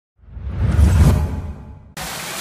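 Deep whoosh sound effect of an animated logo intro, swelling up out of silence to a peak about a second in, then fading away.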